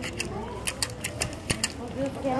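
A series of sharp, irregular clicks and taps, about eight in two seconds, with a faint voice underneath.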